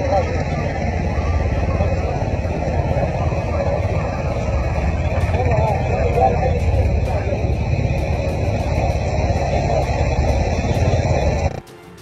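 Loud, steady rumbling noise with indistinct voices mixed in, cutting off suddenly near the end.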